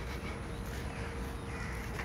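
Quiet outdoor background: a low rumble with a faint steady hum, and a bird calling faintly.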